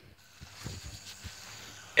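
Faint rustling and a few soft knocks from a handheld camera being moved about, with a finger touching close to the lens.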